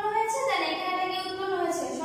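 A woman's voice speaking in a slow, drawn-out way, with some held syllables.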